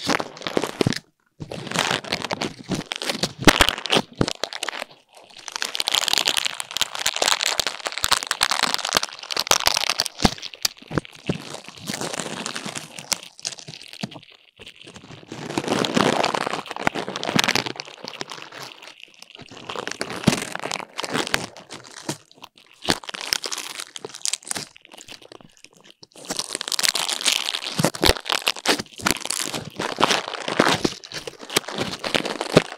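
Spiky chestnut burrs rubbed and scratched right against a microphone: a dry, crackling, crunchy scratching that comes in bursts of a few seconds with short pauses between.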